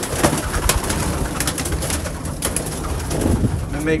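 Domestic pigeons cooing, with many short clicks and rustles mixed in.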